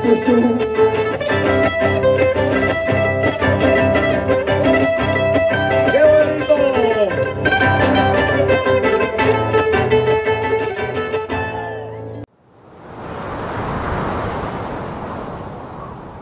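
Folk music of plucked and bowed strings plays steadily, with some sliding pitches, then cuts off abruptly about twelve seconds in. A pitchless rushing noise then swells and fades away.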